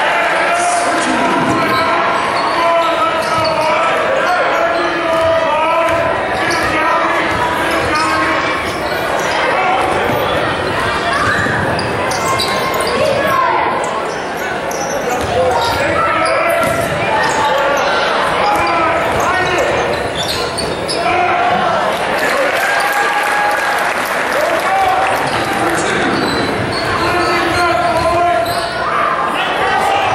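Basketball bouncing on a hardwood gym floor during live play, amid many overlapping voices from the crowd and benches, echoing in a large gymnasium.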